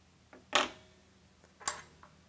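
A faint tap, then two sharp clicks about a second apart, the first with a short ring after it, from hand tools being handled while the cable's ripcord is worked.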